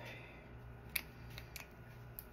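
Small plastic makeup packaging handled on a table: one sharp click about a second in, then a couple of fainter clicks, over a low steady hum.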